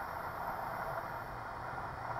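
Steady cabin noise of a Cirrus SF50 Vision Jet accelerating down the runway at full takeoff power on its single Williams FJ33 turbofan.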